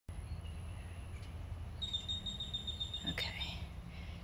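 Outdoor ambience with a steady low rumble, and a bird's high, thin trill starting about halfway through and lasting under two seconds.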